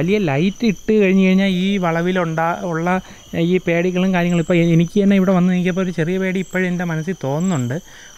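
A man talking in Malayalam, almost without pause, over a steady, unbroken trill of crickets at night.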